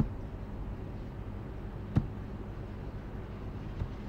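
Steady low room hum with two sharp computer-mouse clicks, one at the very start and one about two seconds in.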